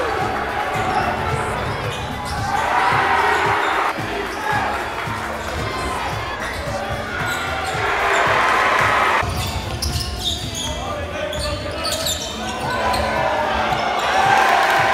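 Basketballs bouncing on a gym's hardwood floor during a game, in a large echoing hall, over crowd chatter that swells twice.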